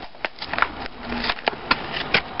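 Plastic fingerboard packaging being torn open and crumpled by hand: an irregular run of crackles and snaps.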